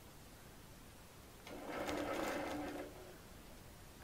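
Longarm quilting machine running briefly for about a second and a half, starting about 1.5 seconds in, stitching in place to lock the stitches at the start of a line of quilting.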